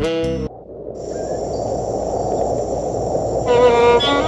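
Background music breaks off about half a second in, giving way to steady high-pitched cricket chirring over an even rushing outdoor noise. A sustained musical note comes back in near the end.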